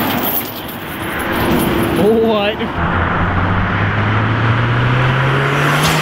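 A car engine accelerating toward the microphone, its note rising steadily for about three seconds and dropping sharply as the car passes close by near the end, over road traffic noise.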